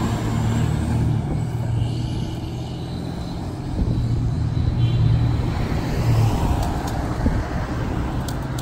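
Fire engine's diesel engine running as the truck drives past and pulls away down the street: a low, steady drone, with a passing car mixed in.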